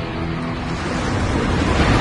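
Sound effect of an ocean wave surging, a rushing noise that grows louder toward the end, over the last held notes of music.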